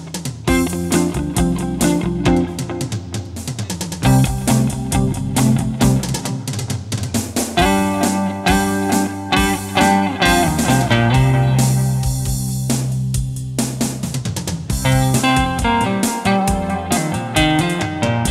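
Stratocaster-style electric guitar played through an amp, running melodic lead lines with a long low note held about two-thirds of the way through, over a backing track with drums.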